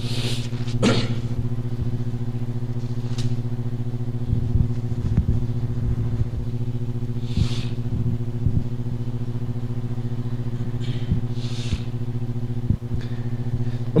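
Steady electrical hum with a buzzing series of overtones, typical of mains hum in a church sound system, with a few faint rustles and handling noises from the handheld microphone.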